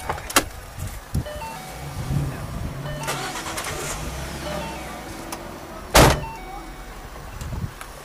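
Ford Mustang GT's 5.0-litre V8 idling, with another car's engine revving as it pulls away a couple of seconds in. A loud knock sounds about six seconds in.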